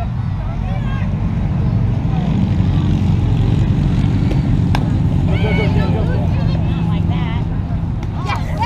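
Players and spectators talking over a steady low rumble, with one sharp crack about four and a half seconds in: a fastpitch softball bat hitting the ball.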